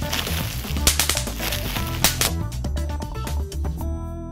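Upbeat music with a steady bass line, over many irregular sharp pops of bubble wrap being squeezed by hand.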